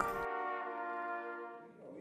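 Trumpet quartet holding one sustained chord that fades away toward the end.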